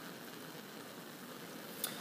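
Steady hiss of a lit Bunsen burner heating saltwater in an evaporating basin, the water just starting to bubble. A small click comes near the end.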